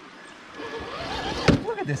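Traxxas TRX4 Sport RC rock crawler driving over creek rocks, its drivetrain running, with a single sharp knock about one and a half seconds in as it works against the rocks.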